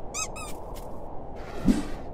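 Two quick high squeaks, squeaky-toy style, as a cartoon penguin stands on a small penguin chick. Near the end comes a rushing swell that ends in a low thump.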